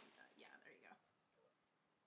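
Faint whispered speech in the first second, then near silence.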